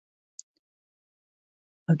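Near silence, with a single faint short tick about half a second in.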